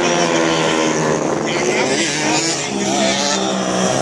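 Small-capacity racing motorcycle engines, 150 cc class, running hard on a circuit. The engine note slides down over the first second or so, then rises and falls again as a bike accelerates and backs off for the corners.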